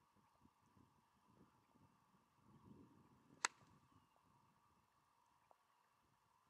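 A golf iron striking the ball on a full fairway swing: one sharp, short crack about three and a half seconds in, against near silence.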